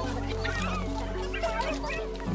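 Chickens clucking in short, scattered calls over background music of slow held notes.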